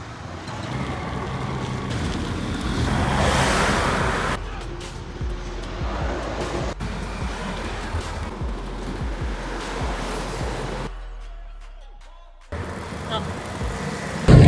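Wind rushing over the microphone and road noise from riding a bicycle along a road with traffic. The rush swells about three seconds in and cuts off abruptly several times.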